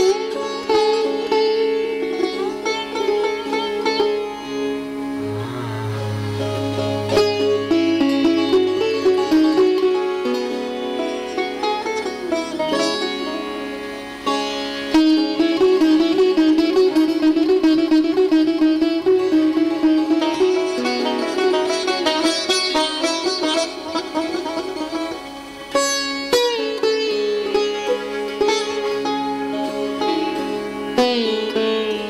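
Live string music from a Persian–Indian ensemble: a Persian taar plucked through a melody in Dastgah-e Nava, with other plucked strings, and a low held tone entering about five seconds in.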